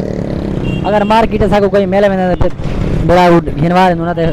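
A man's voice talking over busy street traffic, with motorcycle and car engines running close by.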